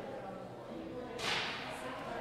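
A single quick swish of paper about a second in, over low murmured voices.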